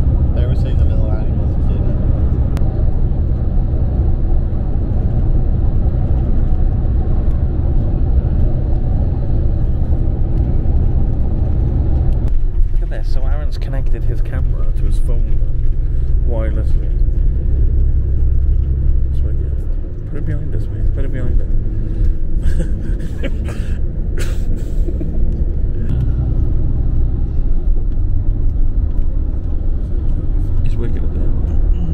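Inside a moving FlixBus coach: a steady low rumble of engine and road noise. About twelve seconds in the rumble changes abruptly to a lighter, uneven one, with scattered clicks and faint voices.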